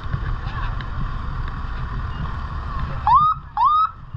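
Fire engine's electronic siren given two short rising whoops, about half a second apart, about three seconds in, over a low rumble of the truck's engine and wind on the microphone.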